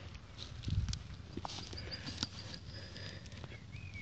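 Grass and weeds rustling and crackling as a hand pushes through them, with a low thump just under a second in. Faint bird chirps sound in the background: a quick run of short high notes midway and a few sliding calls near the end.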